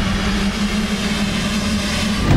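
A pack of motocross bikes revving together at the start gate, a steady, held engine drone.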